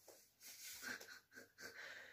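A man's faint, breathy chuckling in a few short puffs, with no voice behind it.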